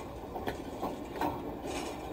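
Rhythmic mechanical knocking, about two sharp knocks a second, over a steady low rumble.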